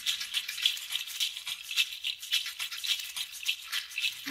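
Shaker percussion playing a quick, even rattling rhythm of several strokes a second, light and high with no bass under it.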